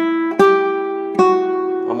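Nylon-string classical guitar played fingerstyle in E minor, open position: melody notes plucked on the top strings, two fresh notes about half a second and just over a second in, each left to ring over the one before.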